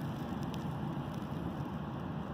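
Steady, even rushing of distant ocean surf, with no distinct events.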